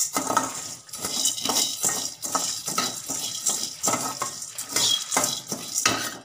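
A perforated steel ladle stirring split dal as it roasts in a stainless-steel kadai: the lentils rattle and the ladle scrapes against the pan in repeated strokes, about three a second. The stirring stops suddenly at the end.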